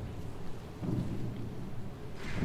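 Low rumbling room noise of a large church hall with soft shuffling and rustling from the audience and players, swelling briefly about a second in; no music is playing.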